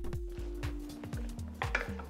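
Soft background music, a few held notes stepping down in pitch, with faint squishing and light clicks from a hand mixing masala-coated elephant foot yam pieces in a ceramic bowl.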